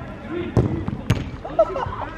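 Two sharp smacks of a football being struck, about half a second apart, as a shot is scored, followed by men's voices shouting.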